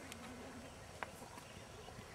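Faint, soft hoofbeats of a horse moving on a sand arena, with a single sharp click about a second in.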